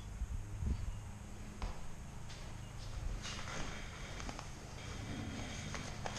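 Scattered light taps, clicks and low knocks, footsteps and handling on a concrete floor, over a steady low hum.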